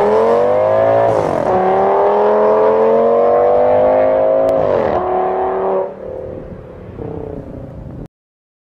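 A car engine accelerating hard, its pitch climbing through gear changes about a second in and again near five seconds, then dropping away and fading as the car moves off.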